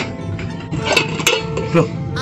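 White enamel stacked food-carrier (rantang) bowls and lid clinking against each other as they are lifted apart, about four sharp clinks, over background music.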